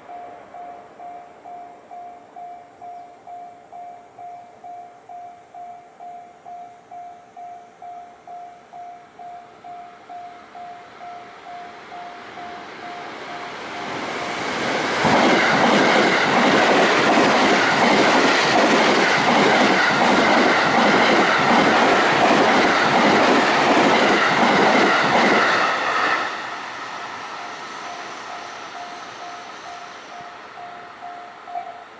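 A level crossing warning bell rings about twice a second, then the 285 series sleeper electric train approaches and passes at speed for about ten seconds, wheels clattering over the rail joints and drowning out the bell. The train noise cuts off sharply as the last car goes by, and the bell is heard again near the end.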